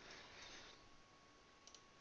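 Near silence: room tone, with a faint computer mouse click, doubled, about one and a half seconds in.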